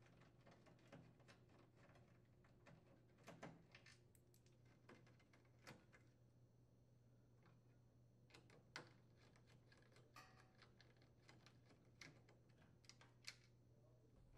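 Near silence with faint, scattered clicks of a screwdriver bit working the screws out of the range's control cover, over a faint steady hum of room tone.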